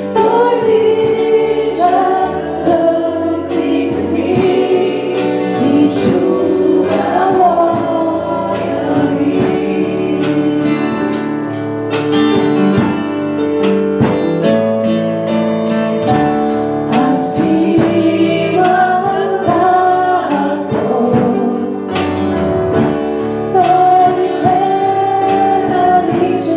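Live church worship song: a woman's voice singing the lead over acoustic guitar and a drum kit, the music running steadily with regular drum and cymbal strokes.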